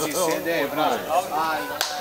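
People talking close by in a crowd, with one sharp crack near the end.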